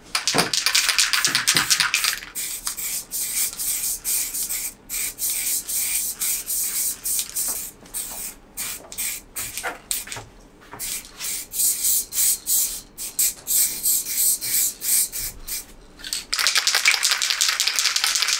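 Aerosol spray-paint cans hissing in many short bursts with brief gaps between strokes.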